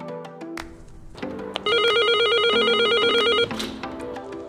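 A building's door intercom ringing: a rapidly warbling electronic ring lasting about two seconds, starting near the middle, over background music.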